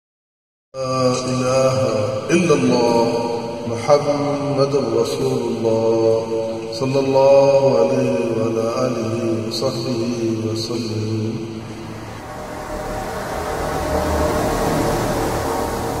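Channel intro jingle: chanted voices holding a drawn-out, layered melody, with a few sharp accents. About two-thirds of the way through it turns into a swelling wash of sound that fades away near the end.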